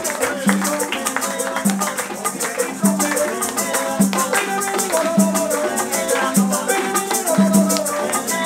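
Small Cuban band playing live: maracas shaking in a steady rhythm over a plucked guitar and a repeating low bass note.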